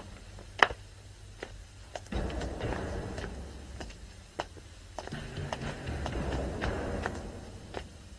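Sharp clicks and taps at uneven intervals over a low rumble that swells twice and fades.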